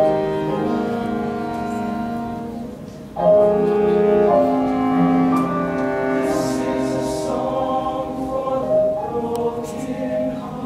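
A large mixed choir of male and female voices singing held chords. The sound fades about three seconds in, then the choir comes back in suddenly and loudly on a new chord.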